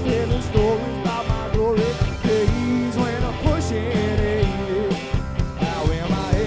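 A live rock band playing: drums keeping a steady beat under bass and electric guitars, with a lead melody that bends up and down.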